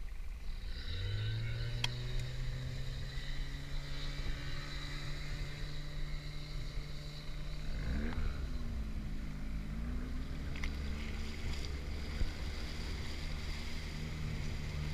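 Outboard motor of a rigid inflatable boat running under way, its pitch rising about a second in, then dipping and recovering around eight to ten seconds in.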